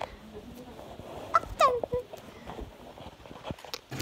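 A child's voice giving two quick, high squeals that fall in pitch, about a second and a half in, over small clicks and rustling from a phone being handled.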